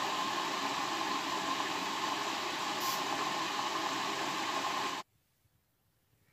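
Matsui front-loading washing machine running: a steady hissing noise with a faint high hum in it, which cuts off abruptly about five seconds in.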